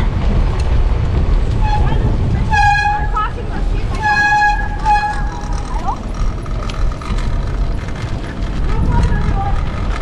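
A vehicle horn honking twice, a short toot followed by a longer blast about a second and a half later, over a steady low rumble of wind and road noise.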